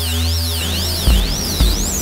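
Live electronic music from hardware synthesizers and a drum machine: a held bass drone under a high tone that sweeps up and down over and over, with a kick drum coming in about a second in.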